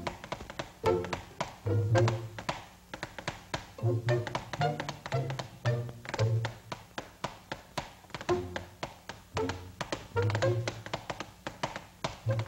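Tap dancing: quick runs of sharp taps over band music with a bouncing bass line.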